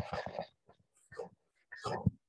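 A man's speech trailing off in the first half second, then quiet broken by a few short, faint breathy sounds near the microphone.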